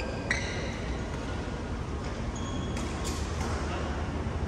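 Badminton court sounds between points: a sharp tap with a brief high ring about a third of a second in, then short high squeaks and a couple of light clicks later on, over a steady low hall hum.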